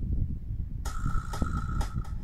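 Low wind rumble on the microphone, then about a second in an electronic dance track starts playing through a Fane 12-250TC driver in a ported enclosure: a held synth tone with a sharp percussive hit about twice a second.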